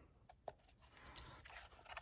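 Near silence, with a few faint clicks and a faint scrape as protective plastic film is peeled off the control knob of a Hobbywing Tunalyzer tester.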